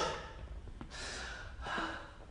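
A man breathing hard: the end of an angry shout falls away, then he takes two heavy, hissing breaths, the second longer, near the end.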